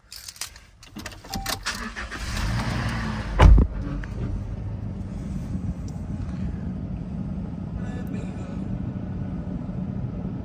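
A Toyota Hilux's 2.7-litre four-cylinder petrol engine being started: first key and switch clicks, then a short crank. It catches with a loud thump about three and a half seconds in, then idles steadily and smoothly.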